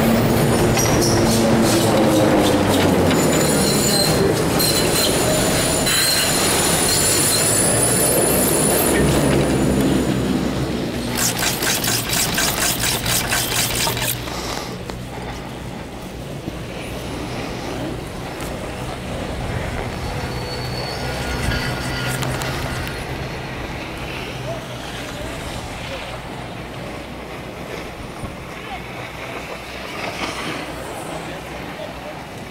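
Detachable high-speed chairlift running through its terminal: machinery whining, with tones that slide down in pitch, then a fast run of clicks for about three seconds. After that the sound drops to a quieter, steady rush as the chair rides out along the cable line.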